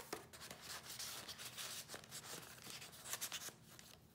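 Faint paper rustling and rubbing, with a few soft clicks, as the thick pages and flip-ups of a handmade junk journal are lifted and turned.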